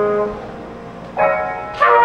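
Trumpet and grand piano playing free jazz: a held note stops just after the start and the music drops away briefly, then a chord struck a little past a second in rings and fades before a loud new entry near the end.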